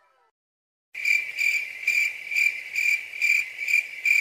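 A cricket-like chirping: a high steady trill that swells about two to three times a second, starting suddenly out of dead silence about a second in.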